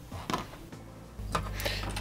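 A few light clicks and taps of small circuit boards and their pin headers being handled, over a low hum that comes in a little past halfway.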